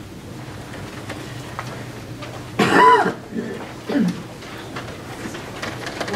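Quiet room tone with faint scattered clicks and knocks, broken about halfway through by one short, loud burst from a person's voice, likely a cough, followed by a single spoken word.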